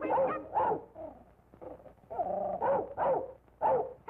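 Cartoon dog barking on an early-1930s soundtrack: about five or six short, pitched yelps, each falling in pitch, a pair near the start and a quicker run in the second half.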